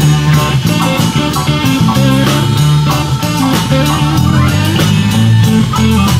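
Blues-rock band playing an instrumental passage with no vocals: guitars over bass guitar and a drum kit, with steady drum hits throughout.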